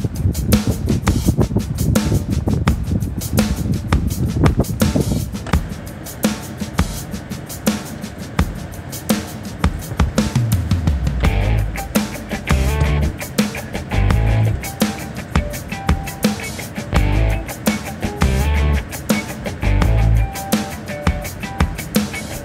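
Background music with a steady drum beat; deep bass notes come in about eleven seconds in.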